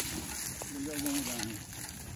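Footsteps and a metal wheelbarrow's wheel rolling over dry leaf litter, a steady rustling noise, with a brief faint voice a little under a second in.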